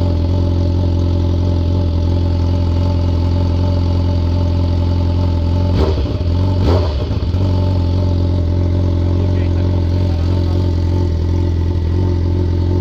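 BMW S1000RR inline-four engine idling steadily, with a brief waver in the sound about six seconds in.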